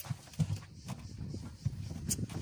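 A few irregular dull knocks and thumps over a low, steady rumble inside a car cabin.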